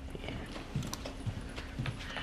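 Footsteps: a few irregular knocks on a hard floor, over a faint steady hum.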